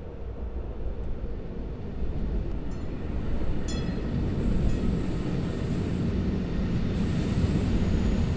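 Passenger train running, heard from inside a compartment: a steady low rumble of the wheels on the track that slowly grows louder, with a couple of brief high metallic squeaks about three to four seconds in.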